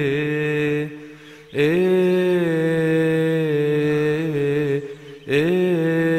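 A male cantor chanting a Coptic psalm tune unaccompanied, drawing out the closing 'Hallelujah' in long held notes that waver in ornaments. He pauses for breath about a second in and again near five seconds.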